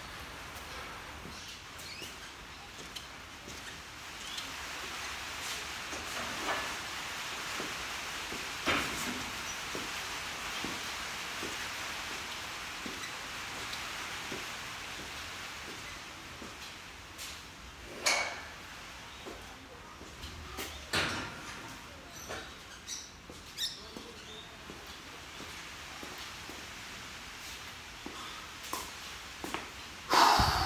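A heavy barbell squat set: a few knocks and clanks of the loaded barbell and plates, the loudest about 18 seconds in, over a steady hiss.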